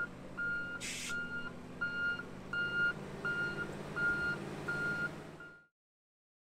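A Tucker Snowcat's backup alarm beeps at one steady pitch, about nine times at an even pace, over the low running of its Chrysler 318 V8. The sound cuts off suddenly near the end.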